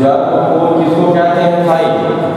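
A man's voice talking, with long drawn-out syllables.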